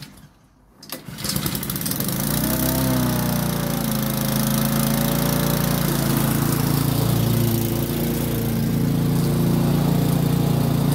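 20-year-old Rover petrol lawnmower engine starting on a pull of the starter cord: it catches about a second in, picks up speed and settles into steady running.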